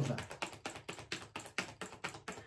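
Tarot deck being shuffled by hand: a fast run of light card clicks, several a second.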